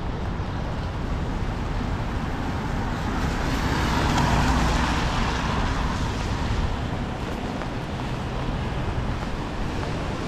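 Steady city traffic noise on wet streets in the rain. A car drives past close by about midway, its tyre hiss on the wet pavement swelling and then fading.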